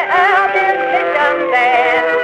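An early jazz band playing an instrumental blues passage. Several wind instruments, horns among them, play held notes together that waver and slide in pitch, on an old recording with little top end.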